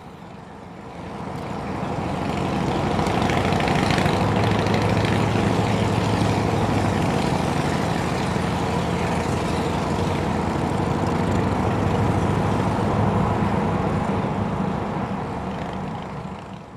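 Motorcycle engine running at a steady cruising speed on the road, growing louder over the first few seconds, then holding steady and fading out at the end.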